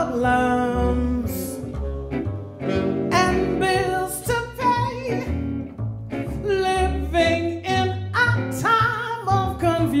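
Live small-group jazz: a woman sings with a bending, improvised-sounding line over upright double bass and electric guitar.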